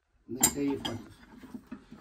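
Wooden barrel staves knocked together by hand: a sharp wooden knock about half a second in and a second, lighter one just after.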